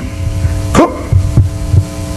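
Steady electrical mains hum from a lecture-hall sound system, with a low, uneven throbbing beneath it; a man says one word about a second in.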